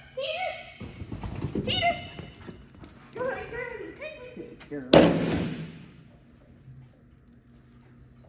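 A dog agility teeter (seesaw) board banging down onto the ground about five seconds in as the dog rides it down: one loud bang with a ringing tail. Before it, a person's voice is heard.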